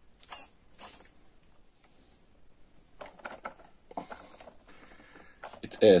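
A few faint, short mechanical clicks and light rattles: two near the start, then a small cluster about three seconds in and a few more about a second later.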